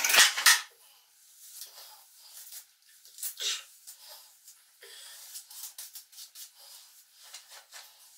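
A bristle hairbrush dragged through wet, tangled hair: a series of short, faint brushing swishes at an uneven pace, the loudest right at the start.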